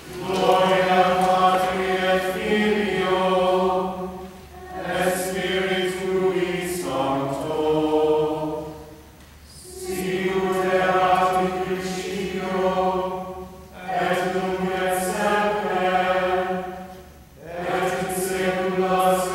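A small mixed choir singing Latin plainchant together, in phrases of about four seconds separated by short breaks for breath.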